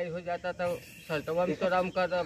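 Speech only: a man talking in short phrases, with a brief pause about a second in.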